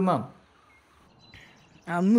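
A man's voice trails off, followed by a quiet pause of faint room tone with one small, faint high chirp, then another man's voice begins near the end.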